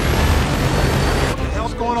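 Steady roar of an aircraft engine with a deep hum, cutting off suddenly about a second and a half in, after which a man's voice begins.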